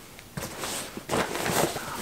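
Fabric rustling and scuffing as clothes are pushed by hand into a soft backpack, an irregular run of soft handling noises starting about a third of a second in.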